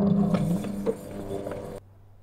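Small electric scooter running, a steady humming tone with mechanical clicks and rattles; it cuts off suddenly near the end.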